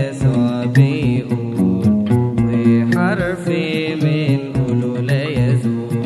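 Music of an Arabic Coptic hymn (tarneema): a wavering melody line over sustained low accompaniment, with regular percussive hits.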